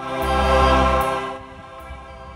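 Choral music: a choir's held chord swells and fades within about the first second and a half.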